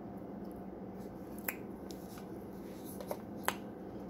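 Someone eating raw cornstarch, with a few sharp clicks from the mouthfuls and the spoon: one about a second and a half in and two more near the end. A steady low hum runs underneath.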